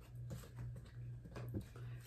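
Tarot deck being shuffled by hand: faint card rustles with a few light taps, over a steady low hum.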